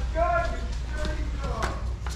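People's voices talking, words not clear, over a steady low hum, with a few sharp clicks about one and a half seconds in.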